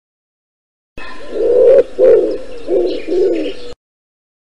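Pigeon cooing: four low coos in under three seconds, the sound starting and cutting off abruptly.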